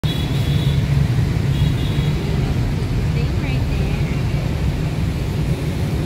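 Steady low rumble of street traffic running without a break.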